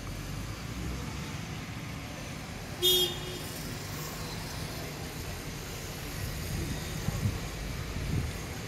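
Steady low outdoor background rumble, like distant traffic, with one brief, sharp, high-pitched sound about three seconds in.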